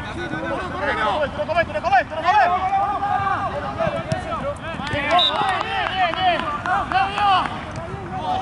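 Several players shouting and calling out during play on a football pitch, their voices overlapping with no clear words.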